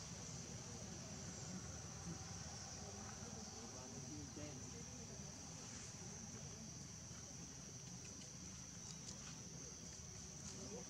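Faint, steady high-pitched drone of insects.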